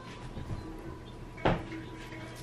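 A sharp knock with a short ring about a second and a half in, after a fainter knock about half a second in, over a faint steady hum.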